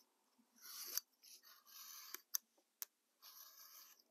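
Hobby knife blade drawn through thin card: several short, faint scratchy cuts, each about half a second long, with a few sharp ticks in between.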